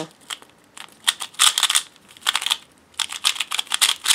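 QiYi Valk 3 speedcube being turned one-handed: runs of quick, sharp plastic clicks as the layers snap round, with short pauses between the runs.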